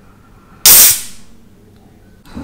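Aluminium Monster Energy drink can cracked open by its pull tab close to the microphone: one loud, sharp pop just over half a second in, trailing off in a short hiss of escaping carbonation.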